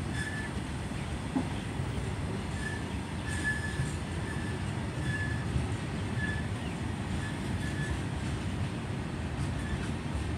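Open-top freight wagons of a goods train rolling past at close range: a steady low rumble of wheels on rail, broken by short high-pitched squeals from the wheels every second or so.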